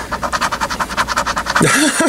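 Scratch-off lottery ticket's latex coating being scratched away in fast, rapid rasping strokes. The scratching stops near the end.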